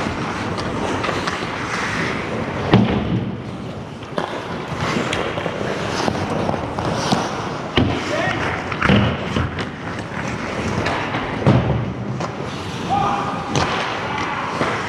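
Ice hockey play in an indoor rink: skates scraping across the ice, with about five sharp knocks of sticks and puck striking through the stretch, and players' distant shouts.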